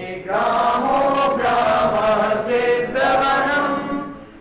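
Voices chanting a Sanskrit verse to a slow sung melody, with long held notes that move from phrase to phrase.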